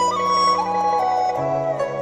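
Japanese flute music: a slow flute melody of held notes over a sustained low backing that shifts to a lower chord about one and a half seconds in.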